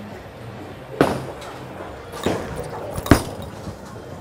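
Bowling alley noise: sharp knocks and clatter of bowling balls and pins, about one second, a little over two seconds and just after three seconds in, the last the loudest, over a steady background murmur.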